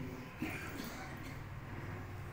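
Faint room tone with a low steady hum in a pause between phrases of a man's speech, and a brief faint sound about half a second in.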